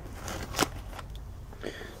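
Faint handling noise, with a single soft click a little over half a second in, over a steady low hum.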